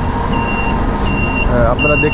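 Vehicle running on a road with a loud low rumble, over which a high electronic beeper, like a reversing alarm, sounds three times in an even on-off pattern. A voice comes in near the end.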